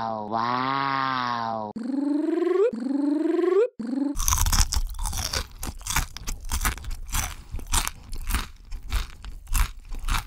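A cartoon voice's 'wow' trailing off, then two rising pitched tones, then about six seconds of rapid, irregular crunching and chewing: ASMR-style eating sounds.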